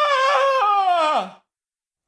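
A man's imitation of a ghost: one long, high, wavering 'oooh' wail that drops in pitch and breaks off about two-thirds of the way through.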